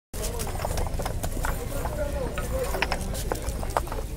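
Concrete paving blocks clacking and knocking against each other as they are pried up by hand and stacked, many irregular sharp knocks, with a crowd's voices talking throughout.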